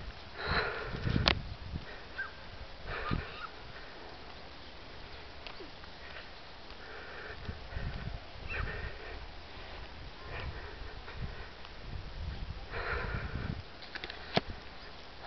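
A person breathing hard from the effort of walking up a steep hill, with noisy breaths coming every few seconds. A sharp click comes about a second in.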